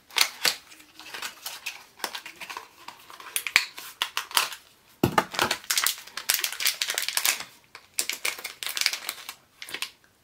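A small cardboard mystery pin box and the bag inside being torn open and handled: a run of small clicks and snaps with spells of tearing and crinkling, the busiest just after the middle.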